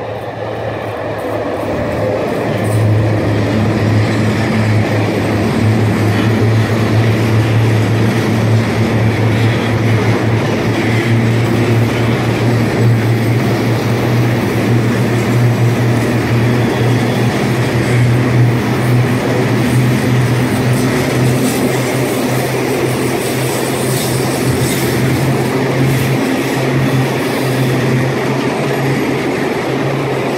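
An EVB class 223 (Siemens ER20) diesel-electric locomotive passes close by, its engine drone swelling over the first few seconds. A long train of gas tank wagons follows, rolling past with a steady rumble and hum from wheels on rail and occasional wheel clicks.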